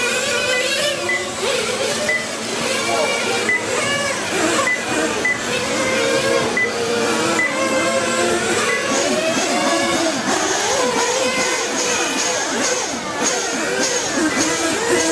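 Several radio-controlled motorcycles' motors whining, each pitch rising and falling over the others as the bikes accelerate and slow round the track. A short high beep repeats about every 0.7 seconds.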